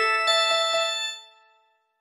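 Bright bell-like chime jingle: three quick struck notes ring over earlier ones and fade out about a second and a half in.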